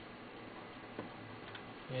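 Two short computer-mouse clicks about half a second apart, the first louder, over a faint steady hiss.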